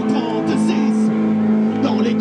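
A live folk band: a man sings into a microphone over strummed acoustic guitar, with long held notes.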